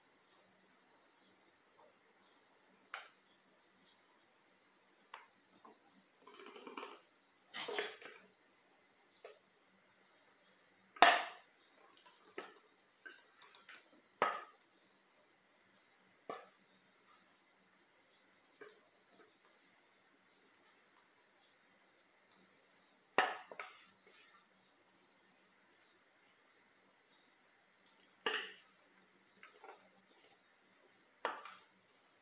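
Scattered clinks and knocks of a stainless steel Thermomix bowl and its spatula as thick brownie batter is poured and scraped out into a silicone mould. The sharpest knock comes about eleven seconds in, with quiet stretches between the sounds.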